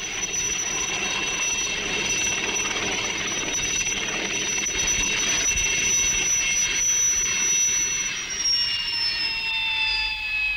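Turbine helicopter, an Alouette III, running with a steady high turbine whine and rotor noise as it settles onto a landing pad. From about eight seconds in the whine falls in pitch as the engine winds down.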